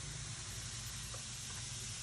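Bath bomb fizzing in a tray of water: a steady, soft hiss, with a few faint small ticks of hands moving in the water.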